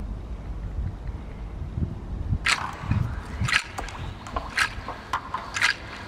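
Footsteps swishing through lawn grass, a short step every half second or so from about halfway in, over a low rumble of wind on the microphone.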